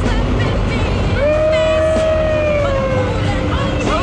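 Steady engine drone inside a jump plane's cabin, with people whooping and cheering over it; one long held shout starts about a second in.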